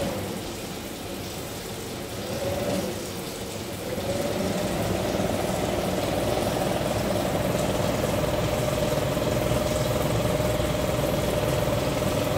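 Kitchen range hood exhaust fan running noisily, a steady hum with a steady whine over it. About four seconds in it grows louder and the whine settles in steadily.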